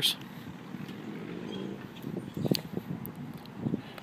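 Steady outdoor background hiss, with a few faint, indistinct voice-like murmurs around the middle and again near the end.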